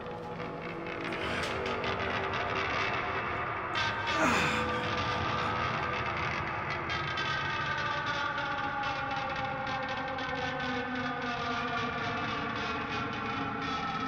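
Eerie horror-film score: sustained droning tones, a quick falling sweep about four seconds in, then several held tones that slide slowly downward.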